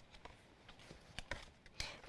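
Faint scattered clicks and taps from fabric pieces and templates being handled on a cutting mat.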